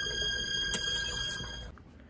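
A steady high-pitched ringing tone with overtones over a low rumble, with one sharp click about three-quarters of a second in; it cuts off suddenly near the end.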